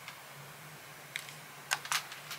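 A hardcover picture book being handled and its page turned: a few short paper rustles and clicks in the second half, over a faint steady hum.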